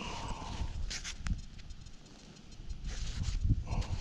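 Gloved fingers rubbing soil off a small dug-up metal button: soft scratchy rustling of the gloves, with a few light clicks about a second in and a louder patch of scrubbing near the end.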